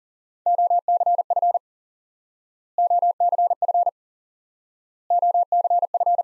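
Morse code at 40 words per minute: a steady mid-pitched beep keyed rapidly in the same short group three times, each group about a second long with a gap of about a second between them. The group is the code for 'off-center-fed dipole'.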